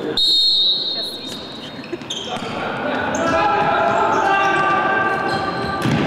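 Indoor futsal match: a referee's whistle blows at kick-off, then the ball thuds on the wooden court while voices call out, all echoing in the sports hall.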